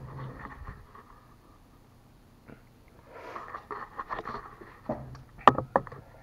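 Eating noises from a man working through hot chicken wings: chewing and sniffing, with a few sharp clicks near the end, the loudest about five and a half seconds in.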